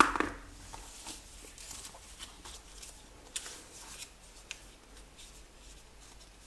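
Sheet of origami paper being folded and creased by hand: soft, scattered rustles and crinkles with a few light taps, loudest right at the start.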